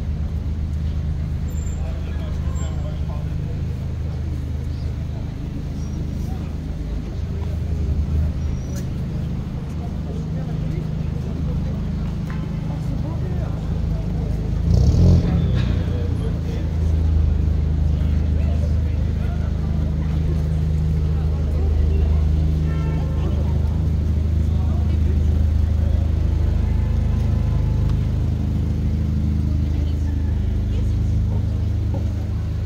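Busy downtown street traffic: car engines running and idling at an intersection, a steady low hum, with a brief louder rush of a passing vehicle about halfway through.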